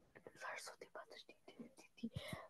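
Faint whispered speech: a quiet, breathy voice murmuring indistinct syllables.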